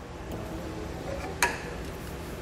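Rubber exhaust hanger being pried off its mounting rod with a pry bar, with one sharp click about one and a half seconds in as it pops free.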